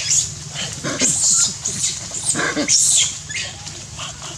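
Baby macaque screaming in distress while an adult macaque grabs and holds it: a run of about five shrill, wavering screams in four seconds.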